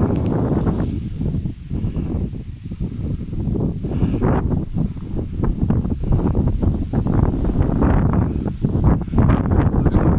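Wind buffeting the microphone outdoors: a loud, low rumble that rises and falls irregularly.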